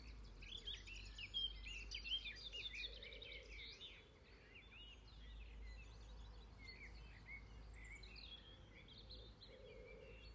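Faint outdoor birdsong: many short chirps and twitters from several small birds, busiest in the first few seconds, over a low steady rumble.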